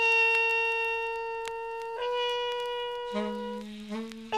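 Free-jazz horns, a Grafton alto saxophone and a trumpet. One horn holds a long note for about two seconds, then moves up a little to another held note. A second horn comes in with a lower sustained note near the end.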